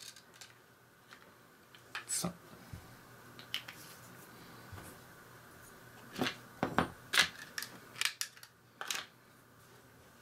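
Scattered light clicks and taps of plastic being handled: a paint dropper bottle, a clear plastic blister tray and small plastic model parts. A few come early, and a denser, louder run of clicks falls in the second half.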